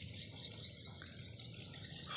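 Faint, steady high-pitched background chorus of insects.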